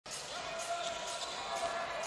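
A basketball dribbled on a hardwood arena court, a few bounces heard over a steady background hum of the hall.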